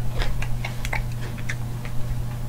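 A person chewing a raw kale and mushroom salad: irregular crisp crunches and mouth clicks, several a second, over a steady low hum.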